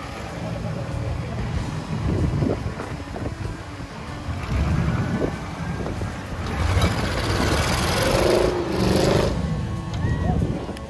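Engine of a modified Jeep-style 4x4 off-roader labouring and revving as it climbs a rocky obstacle. It grows louder and noisier from about two-thirds of the way in as the vehicle powers up a sand slope with its tyres spraying sand. Crowd voices can be heard around it.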